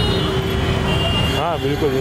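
Road traffic rumbling steadily, with a steady tone held for about the first second, and a short spoken "aa" near the end.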